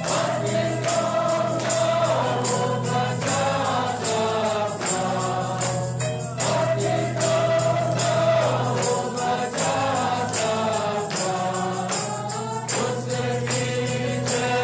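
Choir singing a gospel song over a steady percussion beat.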